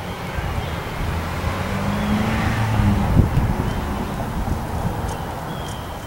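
A car driving past on the street, its engine hum and tyre noise swelling to a peak about halfway through and then fading away.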